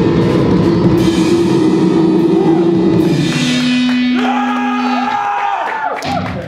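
Live rock band with drum kit and electric guitar playing. About three seconds in the dense full-band sound thins out, leaving one steady held note and then gliding, sliding pitched tones as the level slowly falls.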